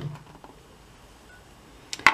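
Quiet room tone with no clear activity, and a single brief click near the end.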